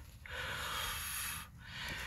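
A person breathing out close to the microphone: one soft breath lasting about a second, then a shorter one near the end.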